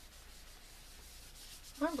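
Faint, steady dry rubbing of a hand blending soft PanPastel pigment into the tooth of pastel paper, with no distinct strokes. A woman's voice starts near the end.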